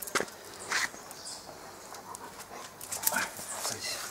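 A large dog eating a treat at close range: a few short, quiet smacking and licking mouth sounds.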